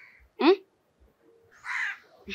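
A short voice sound about half a second in, then one harsh crow caw near the end.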